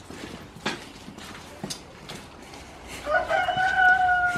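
A few light knocks, then about three seconds in a rooster crows, ending on one long held note.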